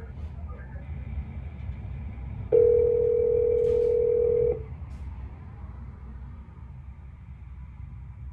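Telephone ringback tone heard over the phone line: a single steady ring lasting about two seconds, starting about two and a half seconds in, as the call is transferred to another representative. A low hum from the open line runs underneath.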